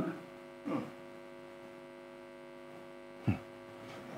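Steady electrical mains hum made of several fixed low tones, heard on a video-call audio feed, with two short faint blips, one just under a second in and one near the end.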